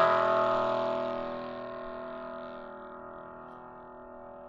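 A single chord struck once on a bell-like musical instrument, ringing out and slowly fading.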